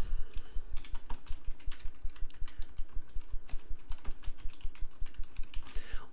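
Typing on a computer keyboard: a quick, continuous run of keystroke clicks.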